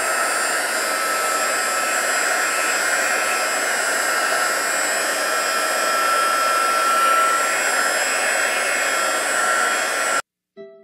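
Handheld heat gun blowing steadily over freshly poured epoxy resin to pop surface bubbles: a continuous rush of air with a thin, steady motor whine.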